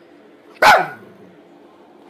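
A dog barks once, a single short, sharp bark about two-thirds of a second in.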